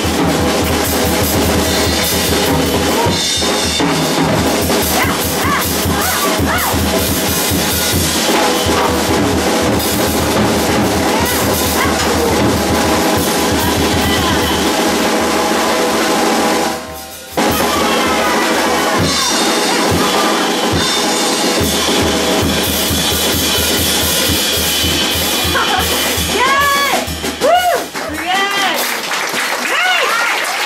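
Live jazz piano trio playing: piano, electric bass and drum kit, with a short full stop about 17 s in. Near the end a singing voice comes in and the bass drops away as the tune winds down.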